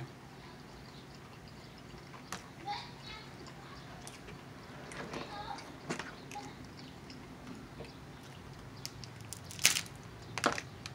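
Cooked crab legs being cracked and snapped apart by hand, with scattered short cracks and clicks and some eating sounds. A sharper, louder crack comes near the end.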